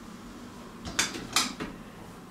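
Two sharp plastic clicks about half a second apart, with a fainter one just after, as a whiteboard marker is handled and taken up at the board.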